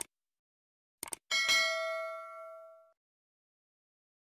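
Subscribe-button animation sound effect: a mouse click, then two quick clicks about a second in, followed by a notification bell ding that rings out and fades over about a second and a half.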